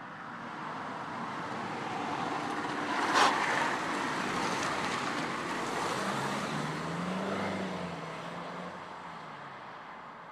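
A car driving past: tyre and engine noise swells over the first few seconds and fades away near the end. There is a sharp click about three seconds in.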